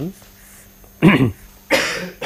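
A man coughing: a short voiced sound about a second in, then a harsh noisy burst near the end.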